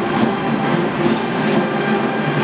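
A loud, steady wash of crowd noise and marching-band sound, blurred together by the echo of a domed stadium.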